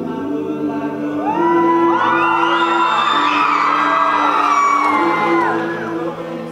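Male a cappella group singing held chords. About a second in, high voices slide up into long notes above the chords, then slide back down near the end.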